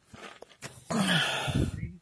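A man's breathy, wordless vocal sound lasting about a second, falling in pitch as it starts.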